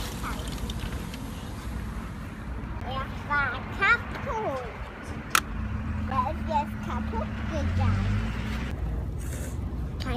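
A young child's short, high-pitched vocalisations over a steady low rumble, with one sharp click about five seconds in.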